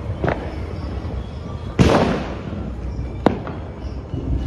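Firecrackers going off: a small pop near the start, a loud bang about two seconds in that trails off over half a second, and a sharp crack a little after three seconds, over a steady low background rumble.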